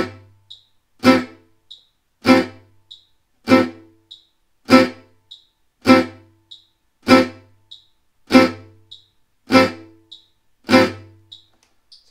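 Gypsy jazz acoustic guitar strummed with a plectrum: ten short, crisp Am6 chord strokes on beats one and three at 100 bpm, about one every 1.2 seconds. Each chord is cut short by releasing the left-hand fingers right after the stroke. A faint metronome click falls midway between strokes, on beats two and four.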